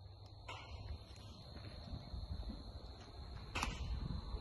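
Faint outdoor field ambience with a steady high-pitched whine and low rumble, broken by a few light knocks and one sharper smack near the end.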